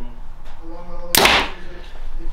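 A Prime Inline 35 compound bow shot once, about a second in: a single short, sharp release sound from the string and limbs.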